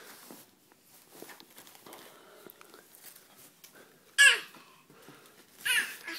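A toddler's loud, high squeal about four seconds in, falling in pitch, then a second shorter high vocal sound near the end. Faint rustling and handling noises come before it.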